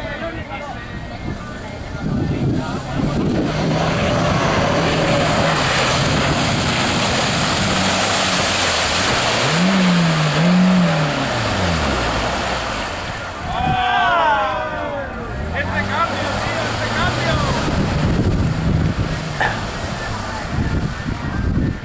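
Small Suzuki Samurai-type 4x4's engine revving as it drives through deep mud ruts, its pitch rising and falling, twice sharply in the middle, over a loud rushing noise. Voices call out about two-thirds of the way in.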